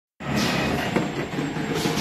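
Automatic piston filling and capping machine running, a steady mechanical clatter with a hiss that comes and goes in the upper range and a sharp click about a second in.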